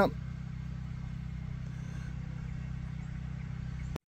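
A steady, unchanging low hum, like a motor running.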